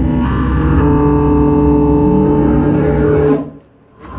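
Live rock band playing, electric guitar and bass guitar holding steady notes through an amplified PA, then stopping abruptly about three and a half seconds in.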